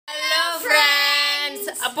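Two boys' voices in a drawn-out sung greeting, holding a note for about a second and a half and stepping down in pitch partway through, then speech begins near the end.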